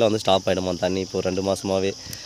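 A man talking, over a steady high-pitched chirring of insects.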